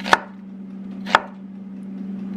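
Kitchen knife slicing an onion into half-moon pieces on a wooden cutting board: two sharp chops about a second apart, over a steady low hum.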